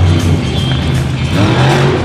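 Loud arena music over a monster truck's engine, which revs up sharply about a second and a half in as the truck launches off a dirt ramp.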